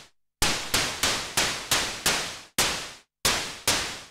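Korg Monologue analogue synthesiser playing a snare/cymbal patch made from VCO2's noise mode. It repeats hits about three a second, each a burst of noise with a sharp attack and quick decay, with a short break near the middle. A one-shot sawtooth LFO on the filter cutoff accentuates each attack while the envelope shapes the decay.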